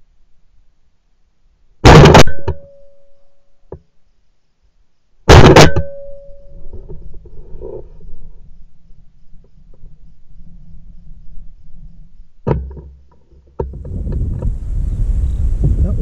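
Two shotgun shots, about three and a half seconds apart, very loud and close to the microphone, each with a short ringing tail.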